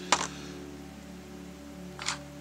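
A single sharp click of a metal pneumatic fitting being set down on the workbench, just after the start, over a steady low hum.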